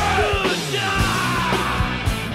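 Punk-style rock song with yelled vocals over a steady drum beat.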